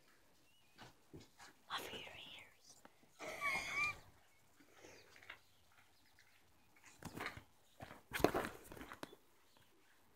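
Faint, distant voices in short snatches, with a brief warbling call about three and a half seconds in.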